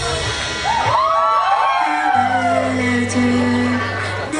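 Live pop band playing between vocal lines while several audience members whoop about a second in, their cries rising and falling over one another; from about halfway a low held chord of bass and keyboard sustains.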